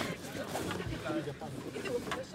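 Low background chatter of several passengers' voices overlapping, with no clear words.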